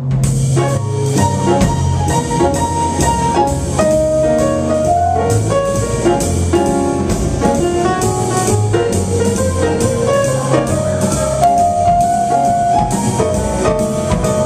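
Live jazz piano trio playing: grand piano chords and melody over a plucked upright bass line, with a drum kit keeping a steady beat on the cymbals.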